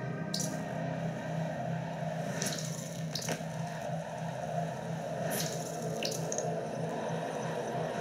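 Ambient sound design from a space documentary's soundtrack: a steady low hum under a grainy hiss, with a handful of short sharp clicks scattered through it.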